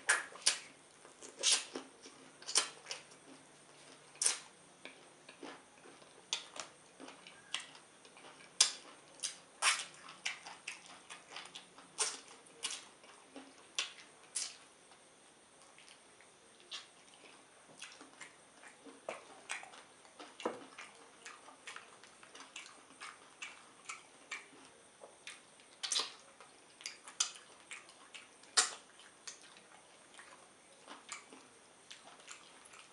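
Close-miked eating sounds: wet smacks, sucking and chewing as chicken in ogbono and okra soup is eaten by hand. They come as a run of sharp, irregular clicks, some much louder than others.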